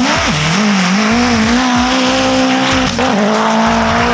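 Race-built Suzuki Samurai dirt drag truck running hard down a dirt strip. The engine note drops sharply at gear changes, about a third of a second in and again about three seconds in, then climbs back and holds high.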